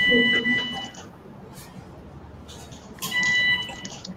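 Electrosurgical generator's activation tone for bipolar diathermy, a steady high beep sounding twice: for about a second at the start and again for under a second near the end. Each beep marks the bipolar forceps being fired to coagulate tissue.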